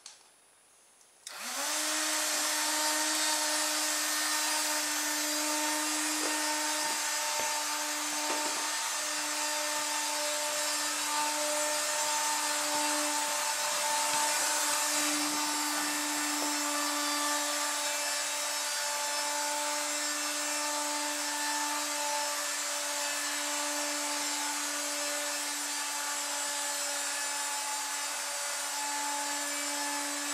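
Small electric fan motor salvaged from a USB vacuum cleaner, starting about a second in and then running at high speed on its high-power setting. It gives a steady whine over a rush of air as the fan blows air out sideways.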